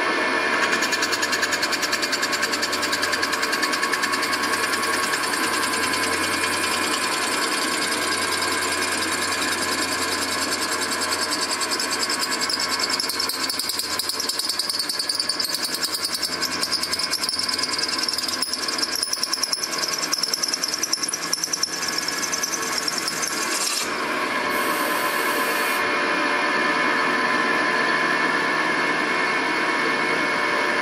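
CNC milling machine drilling a stud hole in an air-cooled VW engine case for a case-saver insert: the spindle and cutter run with a steady whine and cutting noise. The sound breaks off and shifts briefly about 24 seconds in, then carries on steadily.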